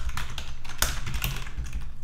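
Typing on a computer keyboard: an irregular run of key clicks, one louder than the rest a little under a second in.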